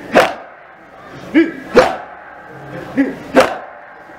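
Mourners doing matam, beating their chests in unison: three sharp slaps about 1.6 seconds apart, each just after a short chanted cry from the group.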